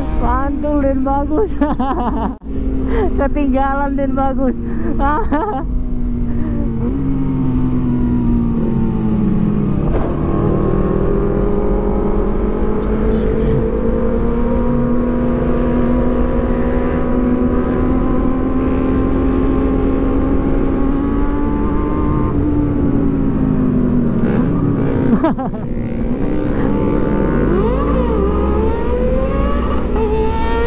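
Sport motorcycle engine heard from the rider's seat under way, running steadily at cruising speed with a rumble of wind and road. The engine note drops as the bike slows, once a few seconds in and again past the middle, then climbs as it accelerates in the last few seconds.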